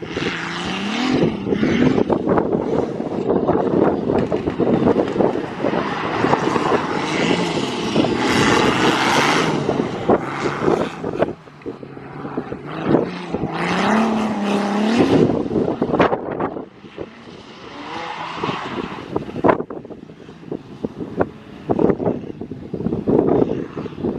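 Turbocharged, straight-piped BMW E46 3.0 inline-six drifting, revved hard and repeatedly, with rising swells in engine pitch about a second in and again around halfway. The sound is quieter in the last third.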